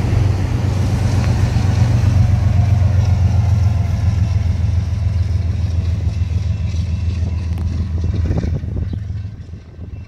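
Freight train of autorack cars with a diesel locomotive rolling past: a steady low engine rumble over rail and wheel noise, fading away about nine seconds in.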